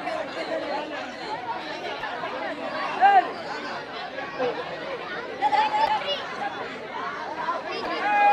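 Crowd chattering and shouting all at once, with a few louder calls rising above the babble, the loudest about three seconds in.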